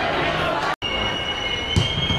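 Crowd chatter, cut off abruptly just before the midpoint, then a long, steady high-pitched referee's whistle blast.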